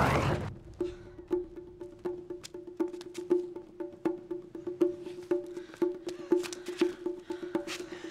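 Film score music: a quiet, even pulse of short struck notes, about two a second, each sounding the same mid-low pitch. A loud noise dies away in the first half second before the pulse begins.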